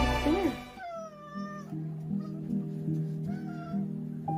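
A domestic cat meowing twice, about a second in and again near the end, over soft background music that drops from louder music near the start.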